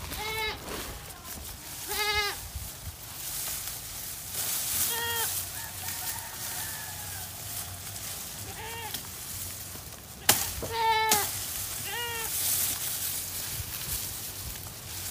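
Goats bleating, about six short quavering calls a couple of seconds apart, with one sharp click about ten seconds in.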